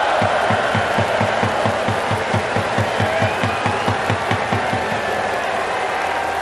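A large crowd of baseball fans in the stands cheering, with a steady low beat about four times a second that stops near the end.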